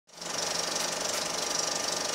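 A fast, steady mechanical clatter, like a small machine running, that fades in quickly at the start and then holds level.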